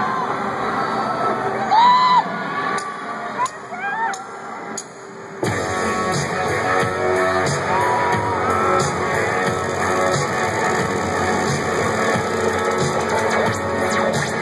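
Stadium crowd screaming and whistling, then about five seconds in a live rock band comes in all at once with electric guitars and bass, playing on steadily under more crowd shouts.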